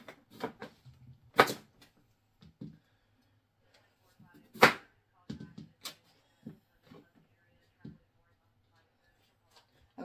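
Kitchen knife cutting through raw beets and knocking on a cutting board: about nine separate sharp knocks at uneven intervals, the loudest about halfway through.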